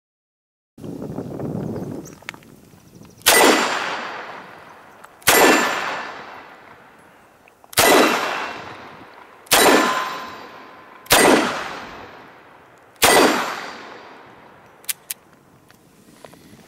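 Six .38 Special rounds fired one at a time from a Dan Wesson 715 .357 Magnum revolver, about every two seconds. Each shot cracks sharply and trails off in an echo. Two faint clicks follow near the end.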